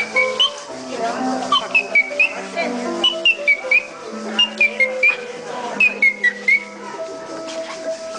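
Music with held, changing notes, over which a high whistle chirps in quick runs of short dipping-and-rising notes.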